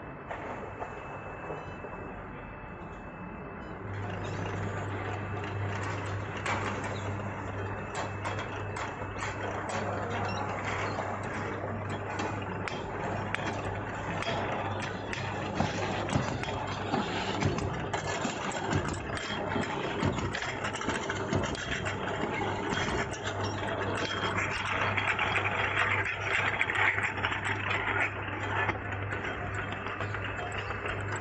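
Automatic wrap-around labeling machine for round jars starting and running: a steady motor hum comes in about four seconds in, with frequent clicks and rattles from jars moving along the conveyor and onto the turntable.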